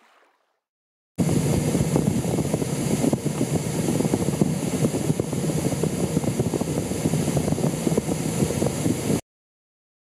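Strong storm wind buffeting the microphone in a dense, crackling rush. It starts suddenly about a second in and cuts off abruptly near the end.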